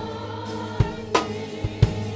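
Live gospel music: a choir singing over held keyboard and bass notes, with a few close-miked drum-kit strikes in the second half, one with a cymbal splash just over a second in.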